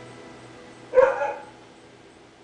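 The last acoustic guitar chord dying away, and about a second in a single short bark cuts in sharply and is over within half a second.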